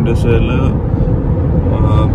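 Steady low rumble of road and engine noise heard inside a moving car's cabin. A voice speaks briefly in the first half-second or so.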